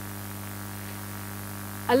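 Steady low electrical mains hum, an unchanging drone, with a voice starting right at the end.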